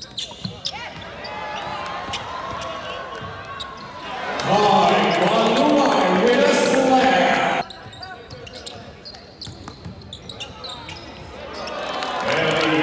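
Basketball game heard from courtside in a large arena: sharp thuds of the ball bouncing on the hardwood court among voices. About four seconds in, a much louder stretch of crowd voices comes in and cuts off suddenly after about three seconds.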